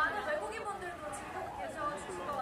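Speech: women talking into headset microphones over the stage sound system.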